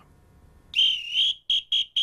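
A high whistled tone: one long wavering note, then three short ones in quick succession.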